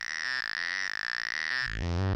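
A synthesizer note sequence played through a Haible Dual Wasp Eurorack filter, sounding thin and bright, with two strong resonant peaks ringing high above the notes. Near the end a quick rising sweep comes as the filter's controls are changed, and the bass comes back in full.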